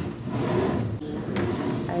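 A white desk drawer sliding open on its runners, easily and smoothly: a steady sliding noise with a single sharp knock about one and a half seconds in.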